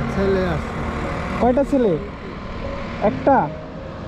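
A man's voice repeating short drawn-out syllables that fall in pitch, the two loudest about a second and a half apart, over the low hum of a motorcycle engine idling.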